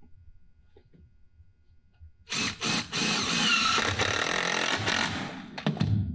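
Cordless impact driver driving a wood screw through a 3/4-inch plywood cleat into a 2x4 platform leg. It starts about two seconds in with a short burst, runs for about three seconds, then stops with a few short bursts as the screw seats flush.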